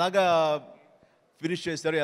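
Only speech: a man talking into a handheld microphone, pausing for about a second midway before going on.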